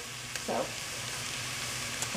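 Ground turkey and diced onions sizzling steadily in a cast-iron pot, the onions sweating to soften.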